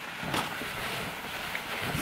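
Fabric rustling as a heavy, thick blazer is handled and opened out, a soft even rustle with a slight swell about a third of a second in.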